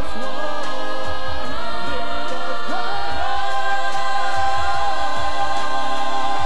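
A stage chorus of many voices singing long held notes with vibrato, one part rising about three seconds in, building to a sustained final chord.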